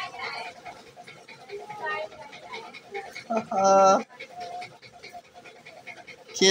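Wordless voice sounds: short breathy bits, then one loud, drawn-out held note about three and a half seconds in.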